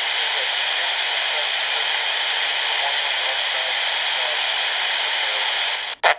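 Handheld radio receiving the AM aircraft band: a steady rush of static with a weak, barely readable voice transmission buried in the noise. This is the hiss of a weak or unmodulated AM airband signal coming through the receiver's speaker.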